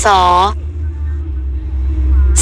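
A narrator's voice speaks a short syllable at the start, then pauses; under it and through the pause runs a steady low drone from the background audio bed.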